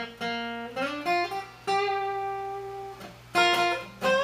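Acoustic guitar playing a single-note lead line in G minor, with string bends rising in pitch about a second in, a long held note in the middle, and a new note struck near the end.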